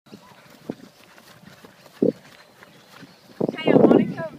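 Faint background with two soft thumps, then a person's voice, loud, in the last half second or so.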